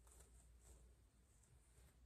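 Near silence, with a few faint, brief scratches of a rat-tail comb drawn through hair and across the scalp to part it.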